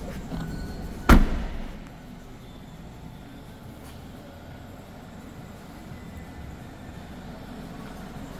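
A Ford Fiesta hatchback's tailgate is pulled down and shut with one loud slam about a second in, followed by a faint steady background hum.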